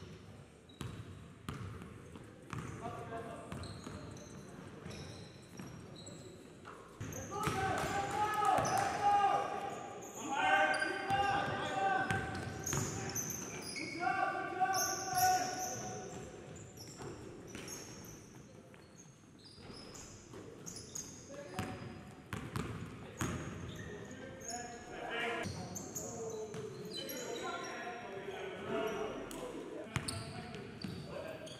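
Basketball dribbling and bouncing on a gym floor during a game, with players' voices calling out in an echoing gymnasium. The voices and other sounds are loudest from about 7 to 16 seconds in.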